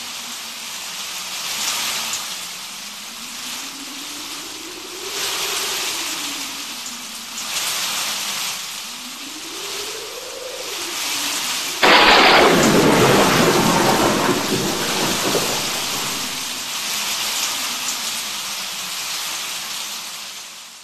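Thunderstorm sound effect: a steady rain hiss with a low tone that slowly rises and falls in pitch, then a sudden loud thunderclap about twelve seconds in that rumbles away over several seconds.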